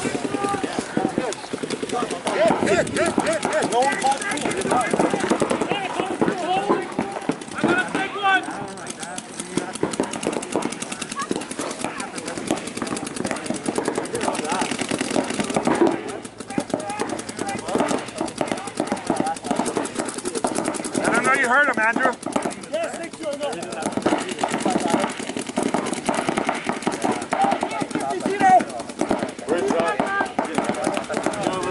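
Paintball markers firing in rapid strings of pops, with players' voices shouting over them.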